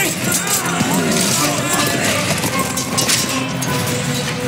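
Film soundtrack: music mixed with wordless voices.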